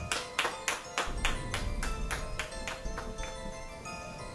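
Two people clapping their hands, about four claps a second, dying away about three seconds in, over soft background music with held notes.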